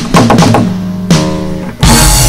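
Acoustic guitar strummed chords: a few hard strums that ring between hits, then a loud strum near the end that rings on.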